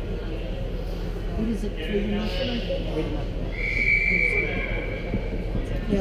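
Ice rink ambience of spectators' indistinct chatter, with one high steady tone held for about a second just past the middle.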